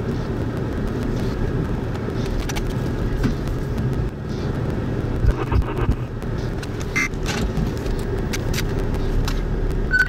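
Steady low rumble of a motor vehicle running close by, with scattered light clicks and rattles.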